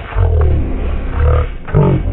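Cartoon character's voice played back at a quarter of its normal speed, turned into very deep, drawn-out sounds whose pitch slowly bends up and down in several stretched-out syllables.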